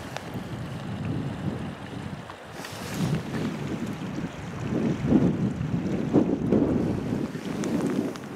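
Gusty wind buffeting the camera microphone, a low rushing that swells and eases and is strongest in the second half.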